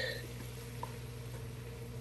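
Faint, steady hiss of mushrooms and onions cooking in a pot, over a low steady hum, with one small tick about a second in.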